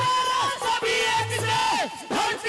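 Live amplified Haryanvi ragni music: a man singing loudly into a microphone over a low drum beat that comes about every second and a quarter, with the crowd joining in with shouts.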